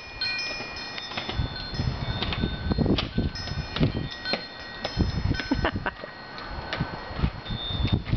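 Kick scooter and inline skate wheels rolling over a concrete sidewalk, with a low uneven rumble and many sharp clicks and knocks. Clear, chime-like ringing tones at several high pitches sound now and then throughout.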